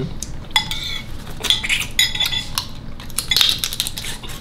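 Metal spoons clinking against ceramic soup bowls: a string of light, irregular clinks, several with a short ring after them.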